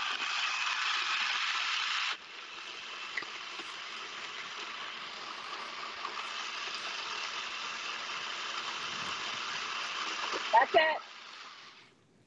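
Nutribullet Pro 900-watt personal blender running, its blades blending grapes, blueberries and bananas into a thick smoothie-bowl mix. The sound drops abruptly in level about two seconds in, then runs steadily and slowly grows louder until the blender stops about eleven seconds in.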